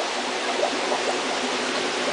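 Steady rushing of circulating water in an aquarium tank.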